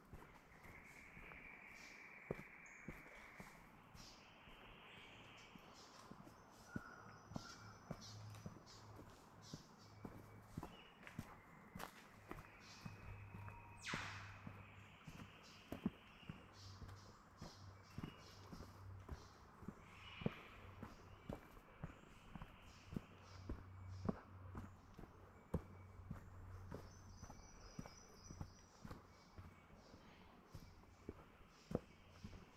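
Footsteps of a hiker walking at a steady pace on a dirt forest track strewn with leaf litter, faint and regular, with one sharper click about halfway through. Faint buzzing insect or bird calls come and go in the background.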